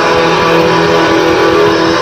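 Hard rock band playing live, with distorted electric guitars holding a steady chord.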